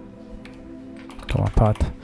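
Computer keyboard typing, a few separate key clicks over a steady low hum that fades out about a second in.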